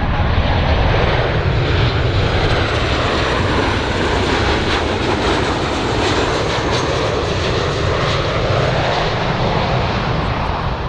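Boeing 737 BBJ2's twin CFM56-7 turbofan engines producing steady jet noise with a deep rumble as the airliner flies by on landing approach with its gear down. A faint high whine fades out in the first few seconds.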